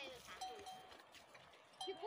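Faint ringing of a livestock neck bell: a couple of short, clear rings about half a second in.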